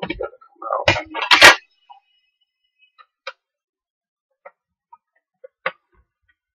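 Thin sheet-metal bottom plate of a mini PC lifted off its chassis and set down on a wooden table, clattering in the first second and a half, loudest at the end of that, with a short ring after. A few light clicks follow.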